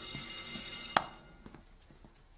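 Electric school bell ringing, a dense metallic ring that cuts off about a second in with a sharp click.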